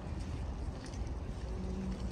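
Steady low rumble and hiss of open-air ambience, with wind on the microphone, and a faint held musical note from the rink's music near the end.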